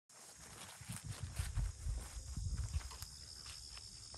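Footsteps walking across grass: soft, low thuds about two a second, fading out near the end.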